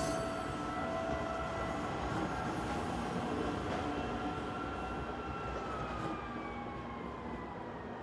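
Commuter train running past a station platform with a steady rumble. A held whine falls in pitch over the last few seconds as the train pulls away.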